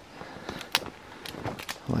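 Footsteps on dry leaves and stones: a few short, irregular crunches and clicks.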